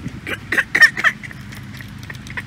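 A child's umbrella stroller being pulled across grass, its metal frame and plastic wheels giving a quick run of short rattles and knocks in the first second.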